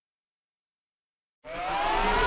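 Dead silence, then about one and a half seconds in, electronic background music comes in with rising synth sweeps.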